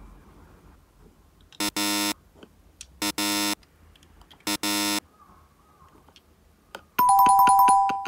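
Three short electronic buzzer tones, each about half a second, then a two-note doorbell-like chime, high then lower, near the end. Small clicks of die-cast minicars and their box being handled fall between.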